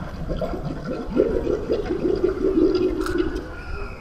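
Water gurgling and sloshing inside a terracotta pot held close to a microphone, irregular and thickening from about a second in, then fading just before the end.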